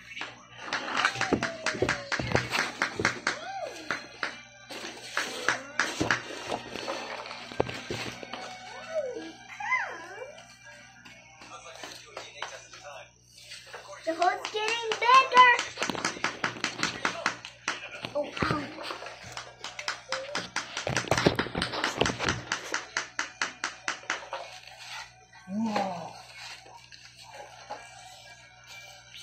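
Wooden mallet striking a chisel into a plaster dig-kit block: quick strings of light knocks, several a second, in four bursts. A child's voice cuts in briefly between them.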